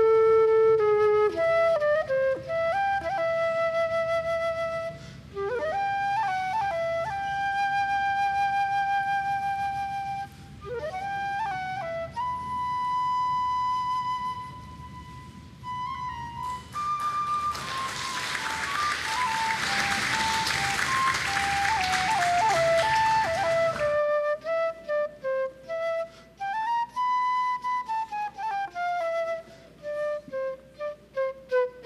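Instrumental background music led by a flute melody, with some notes bending in pitch. About halfway through, a burst of applause sounds over the music for several seconds.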